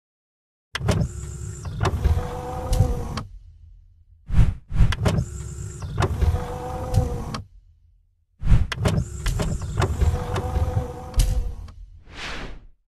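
Mechanical whirring sound effect with clicks and a low rumble, like a motorised mechanism sliding. It is heard three times, each about three seconds long, with short pauses between, accompanying an animated logo intro.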